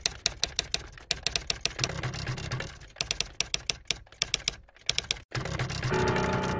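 Typing: runs of sharp key clicks, several a second, broken by short pauses, over a low hum that comes and goes.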